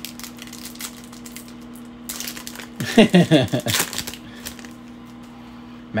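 Foil wrapper of a trading-card pack crinkling as it is torn open, with light clicks of cards being handled. A brief voice sound about halfway through is the loudest moment.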